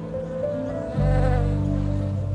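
Honeybees buzzing, a wavering drone strongest in the middle, over background music with low sustained notes that swell about a second in.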